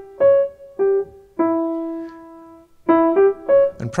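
Steinway grand piano playing a short melody one note at a time that leaps up to a high, unexpected top note, settles on a note held for over a second, then starts the phrase again near the end.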